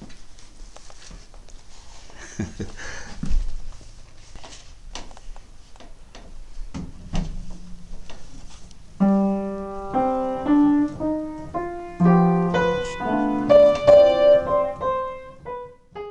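A piano played: after several seconds of knocks and shuffling, single notes and chords start about nine seconds in, a few a second, each struck sharply and dying away.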